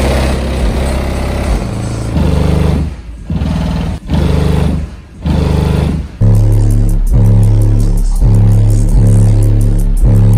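Car audio subwoofers playing bass-heavy music at very high volume: deep, sustained bass notes pulse in a rhythm with short breaks. The bass gets louder and steadier about six seconds in.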